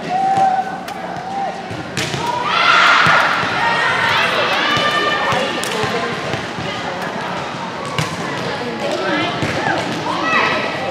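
Volleyballs being hit and bouncing on a gym floor, a sharp knock every second or two, mixed with girls' voices shouting and calling out, loudest from about two to six seconds in.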